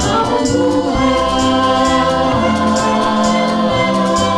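Youth choir singing in three-part SAB harmony, holding long notes over an accompaniment with a bass line and a steady light beat.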